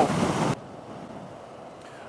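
Wind rushing over a helmet-mounted camera microphone on a motorcycle at freeway speed, cutting off suddenly about half a second in to a much quieter low road rumble.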